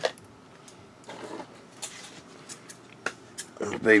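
A few sharp, light clicks and taps of small objects being handled, spaced out over a mostly quiet stretch, with a brief murmured voice about a second in and speech starting near the end.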